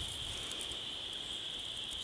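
A steady high-pitched drone that holds at one pitch, over faint background noise, with no distinct event.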